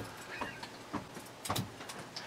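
A few faint clicks and clinks of a glass beer bottle and a bottle opener being handled at the cap, with one sharper click about a second and a half in.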